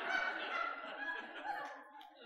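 Congregation laughing at a joke, many voices blending into a diffuse murmur that fades near the end.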